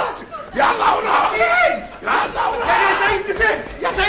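Several voices shouting at once in a loud, overlapping clamor, with no clear words.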